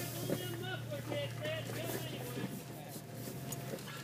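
Off-road vehicle's engine running with a low, steady hum as it moves slowly along a rocky dirt trail, with faint voices talking underneath.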